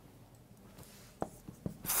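Marker pen writing on a whiteboard: faint scratchy strokes with a few small taps as letters are finished.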